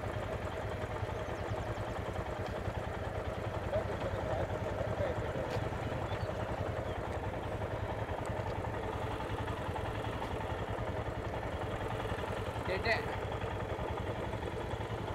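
Royal Enfield single-cylinder motorcycle engines idling steadily at a standstill. A brief voice is heard near the end.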